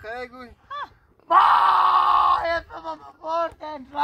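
A person crying and wailing in distress: short broken cries, then one long loud wail lasting about a second, then more sobbing cries.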